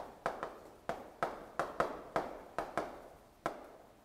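Chalk writing on a chalkboard: about a dozen short, sharp taps at an irregular pace, two or three a second, as the chalk strikes and strokes the board.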